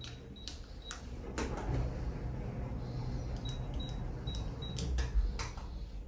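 Passenger lift car travelling upward between floors: a low, steady ride rumble with scattered clicks and rattles.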